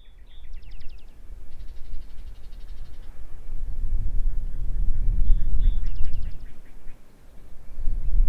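A small bird singing short trilled phrases, repeating one phrase near the start and again at about five seconds, with a longer trill between, over a louder low rumble that swells and briefly drops near the end.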